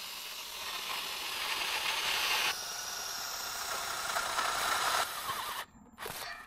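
Power drill boring a twist bit through a galvanised steel hurdle bracket: a steady whine with the bit grinding in the metal, which changes in tone about halfway through and stops shortly before the end.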